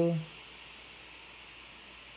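The last syllable of a man's voice, then a steady faint hiss with a thin high whine: quiet room tone.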